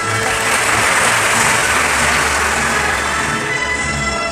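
Audience applauding, with background music playing underneath.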